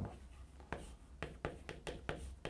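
Chalk writing on a chalkboard: a series of short, quick strokes and taps as characters are written, coming closer together in the second half.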